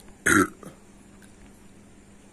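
A man burps once, short and loud, just after downing a glass of whisky.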